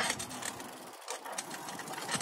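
Bicycle rolling along a dirt trail: tyre noise with a rapid mechanical rattle from the bike.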